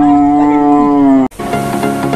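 Edited-in music: one long held note cuts off suddenly just past a second in, then an electronic track with a steady beat starts.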